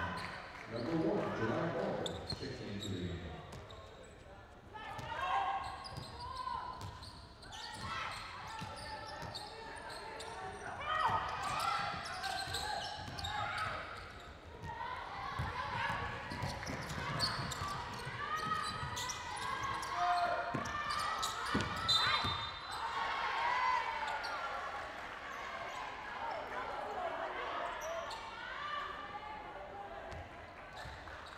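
Sounds of live basketball play on a hardwood court: a basketball bouncing, short squeaks of sneakers, and players' voices calling out across the hall.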